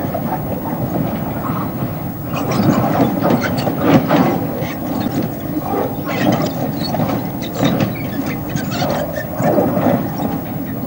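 Narrow-gauge rail-recovery work train running past, dragging a wedge sled that rips the steel rails from the wooden sleepers. A steady rumble, with repeated metallic squeals and clanks from about two seconds in.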